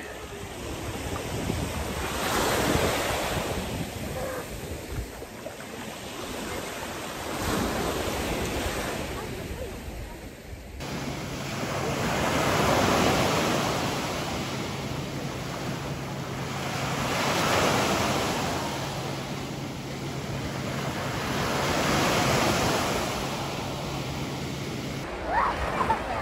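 Small sea waves breaking and washing up on a sandy beach, each surge swelling and falling away about every four to five seconds.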